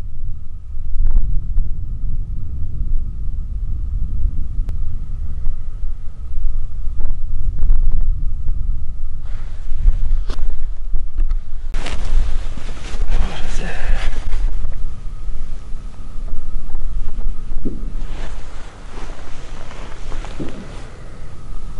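Wind buffeting the microphone: a steady low rumble with a faint thin whine above it. About twelve seconds in, a couple of seconds of rustling and faint, muffled voices break through.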